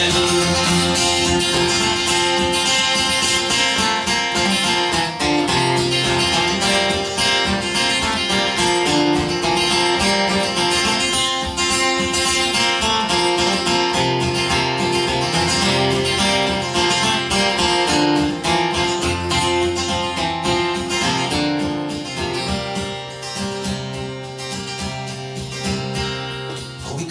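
Solo acoustic guitar playing an instrumental break between sung verses of a folk song, a picked melody over bass notes, softer over the last few seconds.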